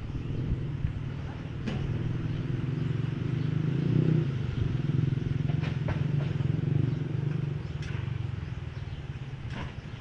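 Electric hair clipper running with a steady low buzz, louder through the middle, with a few light sharp clicks.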